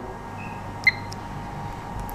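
A single short electronic key beep from a Delta DOP HMI touchscreen as the Enter key on its numeric keypad is pressed, heard about a second in over a steady low background hum.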